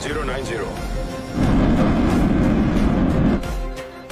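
Film soundtrack: music, with a loud rumbling roar starting about one and a half seconds in and lasting about two seconds before it fades.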